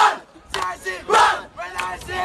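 A crowd of schoolboys shouting a chant together, in loud bursts of voices with short breaks between them.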